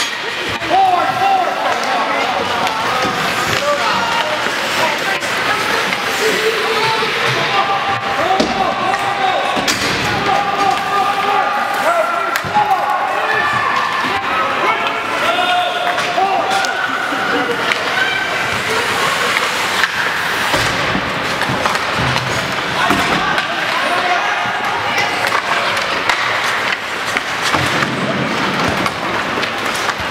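Spectators' voices chattering and calling out in an echoing ice rink, over frequent clacks of hockey sticks on the puck and thuds against the boards.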